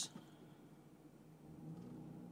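Quiet vehicle cabin: the faint low hum of the idling vehicle, growing slightly louder about two thirds of the way through as it is put into reverse.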